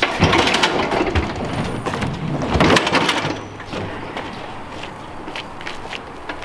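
Heavy walk-behind aerator (Stinger Dual 2450) being rolled out of an enclosed trailer and down its ramp, its wheels and frame clattering and knocking. It is loudest about half a second in and again just under three seconds in, then settles to quieter rolling with occasional clicks.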